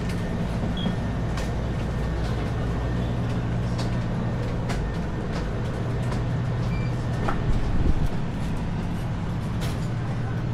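Steady low machine hum of a convenience store's background, with scattered light clicks and a brief louder bump at about eight seconds.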